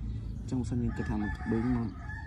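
A long bird call, drawn out for about a second and a half from near the middle, behind a voice.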